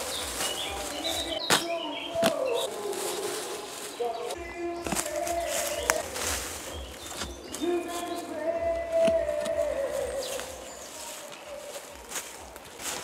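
A spade cutting into soil with a few sharp strikes and scrapes, over oompah music playing in the distance.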